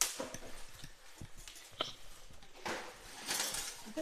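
Plastic film crinkling and rustling as wire oven racks are handled and unwrapped, with a few light clicks and knocks. There is a burst of rustling at the start, and a longer, louder stretch near the end.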